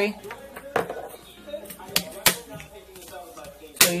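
Hand wire cutters snipping the stray ends of chicken wire: a few sharp, separate clicks of the blades closing through the wire, two of them close together about two seconds in.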